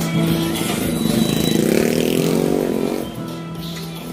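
A motorcycle engine accelerating, its pitch rising from about a second in, heard over music.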